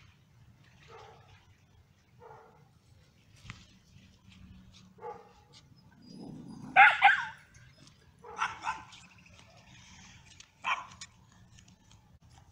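Scottish terrier barking off and on: a few short barks, the loudest about seven seconds in, with more around eight and a half and eleven seconds, and fainter yips earlier.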